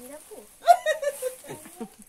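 Speech only: women's voices, with a loud high-pitched exclamation a little over half a second in.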